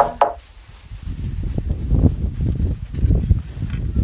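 Wind buffeting the microphone: an irregular low rumble that swells and fades, loudest about two and three seconds in.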